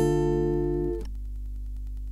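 Acoustic guitar with a capo on the third fret, a Bm chord shape picked string by string: a last note is plucked at the start and the chord rings, then is muted abruptly about a second in. A faint low hum remains.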